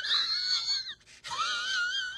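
Two long, high-pitched wavering wails, voice-like, with a brief break about a second in.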